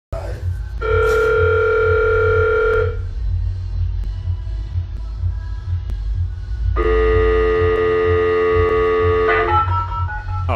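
Electronic tone from an elevator's emergency call panel sounding twice, about two seconds each, the alarm or call for help placed from an elevator car stuck between floors. Background music with a throbbing bass runs underneath.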